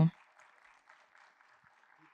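Faint audience applause, a dense patter of many hands clapping.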